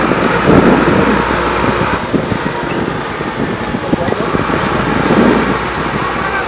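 Heavy trucks moving slowly past: a steady rumble of engine and tyre noise.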